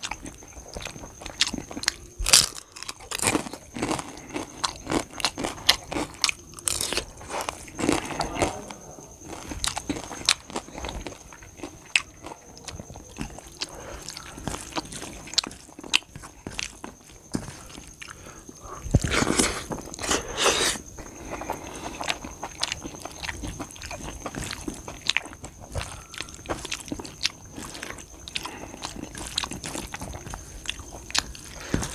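Close-miked eating: a person biting and chewing mouthfuls of rice and brinjal curry eaten by hand, with many small clicks and crunches, and fingers mixing rice on a steel plate. The loudest stretch comes about two-thirds of the way in. A faint steady high tone runs underneath.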